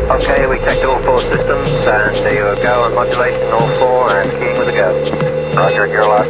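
Techno track: a steady held synth tone and regular ticking high percussion over a low bass, with a spoken voice sample running over the music.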